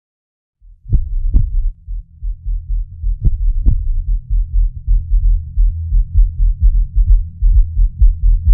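Film soundtrack of deep bass thuds in heartbeat-like pairs over a low rumble, starting about half a second in after silence. The beats come steadily closer together toward the end.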